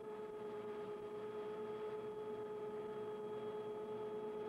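A steady pitched hum holding one note with a row of overtones, unchanging in level and pitch throughout.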